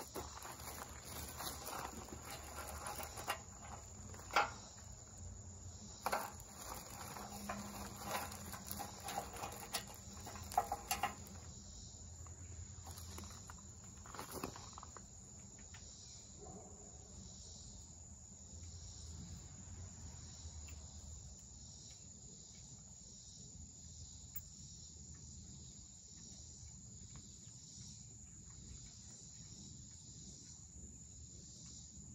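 A steady high insect chirr runs underneath, with scattered light clicks and knocks of tractor hitch parts being handled during the first ten seconds or so; after that only the insects and a few faint clicks remain.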